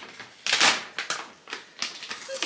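Plastic snack pouch crinkling and rustling as it is opened and handled, in short crackly bursts, the loudest about half a second in.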